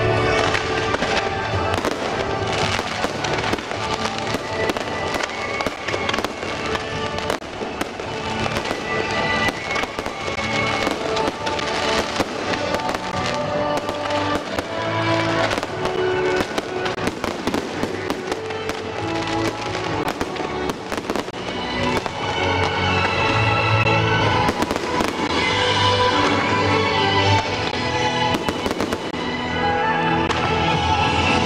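Fireworks display: many sharp bangs and crackles from shells and fountains going off throughout, over music with held notes.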